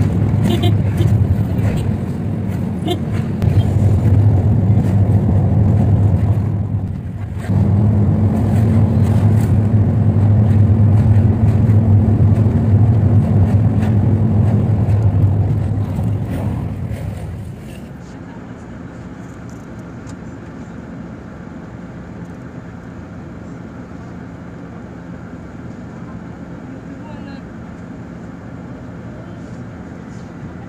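Engine drone and road noise of a moving vehicle, heard from on board, loud and steady with a brief dip about seven seconds in. About halfway through it drops suddenly to a quieter, steady hum inside a bus cabin.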